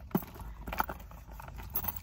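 A Steve Madden handbag being handled close to the microphone, its metal chain strap clinking lightly a few times over a low rumble of handling noise.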